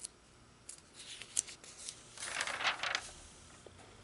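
A glossy magazine page being turned by hand. A few short paper crackles come as the page is lifted, then a louder swish of the page sweeping over comes a little past two seconds in.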